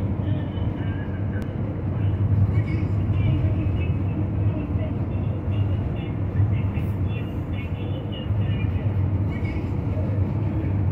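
City transit bus in motion, heard from inside the cabin: a steady low engine and road rumble.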